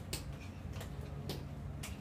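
Sharp ticks at an even pace of about two a second, over a low steady hum.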